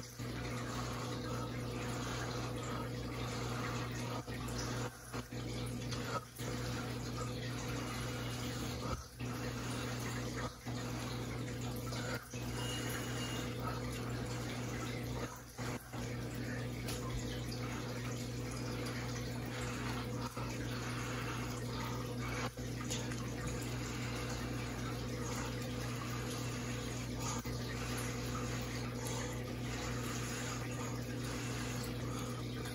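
Steady rush of air from a person blowing by mouth across wet acrylic paint, broken by short breaks to breathe every second or few, over a faint low hum.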